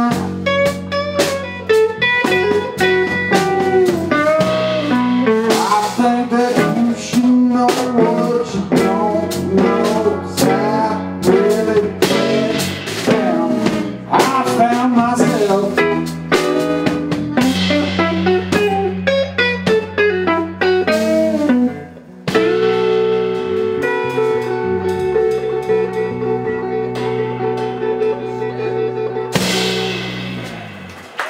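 Live blues-rock band playing an instrumental stretch: lead electric guitar with bending notes over bass and a drum kit. About two-thirds of the way through, the band lands on a held chord that rings on steadily, and a final hit near the end closes the song.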